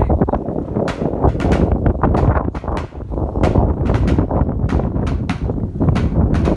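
Wind buffeting the microphone with a loud, steady low rumble, broken by irregular short clicks and knocks.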